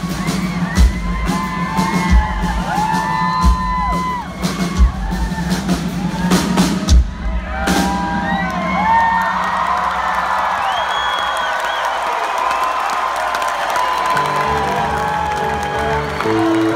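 Live rock band on stage ending a song: drum kit beating over a held low note, stopping with a final hit about eight seconds in. Then the crowd cheers, whoops and screams, and near the end the band starts into the next song.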